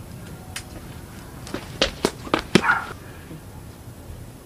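A front door being opened: a quick run of sharp clicks and knocks, about five in a second, from the door and its latch.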